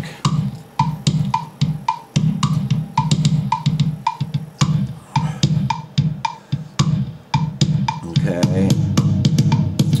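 A programmed drum track from GarageBand's Classic Studio Kit playing back through an iPad's speaker: a kick-drum pattern with a steady high click about twice a second keeping time.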